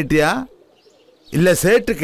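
A man's voice making short repeated, sing-song vocal sounds, with a pause of under a second in the middle.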